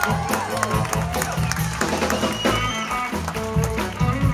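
Live blues band playing an up-tempo, rocking number: drums and electric bass keeping a steady beat under electric guitar and saxophone.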